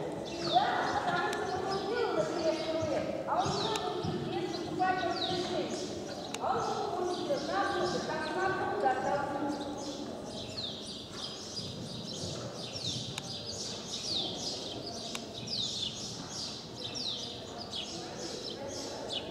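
Small birds chirping: many quick, high, falling chirps, repeating several times a second and thickest in the second half. A person's voice talks over them during roughly the first half.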